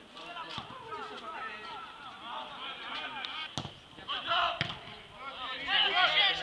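Footballers' shouts and calls on the pitch throughout, louder near the end. A sharp thud of a ball being kicked comes a little past halfway, with a second knock about a second later.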